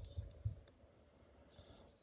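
A few faint clicks in the first second, then near silence.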